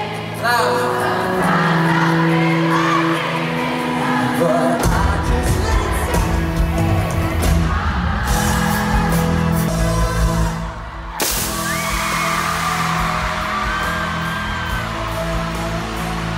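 Live pop-rock band music with a male lead singer, heard from among an arena audience. The bass comes in about five seconds in, and the sound briefly breaks off and resumes about eleven seconds in.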